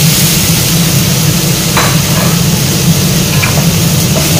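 Stir-fry sizzling steadily in an aluminium wok as Chinese broccoli (kailan) stems, shrimp, chili and shallots fry in hot oil, over a steady low hum. Two brief clicks sound about two and three and a half seconds in.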